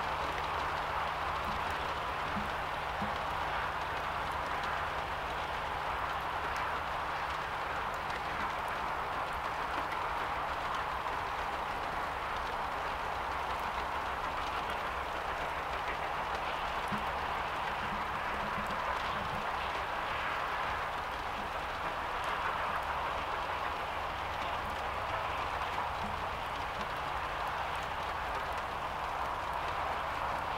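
LMS Black Five 4-6-0 No. 45305 working hard on the climb to Shap, heard at a distance as a steady rushing exhaust with no distinct separate beats.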